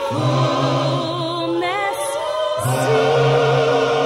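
Gospel choir singing, with a female soloist carrying the lead in a wavering vibrato over the choir's sustained chords. The choir swells into a fuller held chord about three seconds in.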